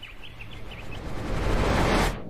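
A stage sound effect: a rushing noise with a low hum underneath, swelling steadily louder over two seconds and cutting off suddenly at the end, like a scene-change whoosh.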